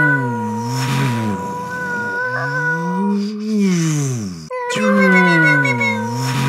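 Several overlaid takes of a man's voice imitating spaceship flybys by mouth: a low hum that glides down, then swoops up and down, with steady high whining tones held over it. There is a brief break about four and a half seconds in, after which the hum glides down again.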